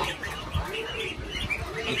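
Goslings peeping in a brooder, a scatter of short, high chirps.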